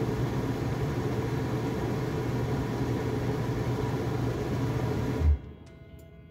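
A 15,000 BTU Dometic rooftop RV air conditioner running on battery power through an inverter, with a steady fan and compressor noise and a low hum. It cuts off suddenly with a brief thump a little over five seconds in, when the two lithium batteries run completely flat.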